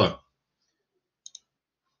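A single computer mouse click, heard as two quick sharp ticks close together, over near silence.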